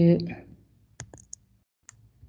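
A word trails off, then a few short, sharp computer clicks come through the video-call audio: a quick cluster of three about a second in and one more near the end.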